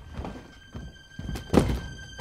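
A leather suitcase set down on a wooden floor with one heavy thunk about one and a half seconds in, after a few softer knocks.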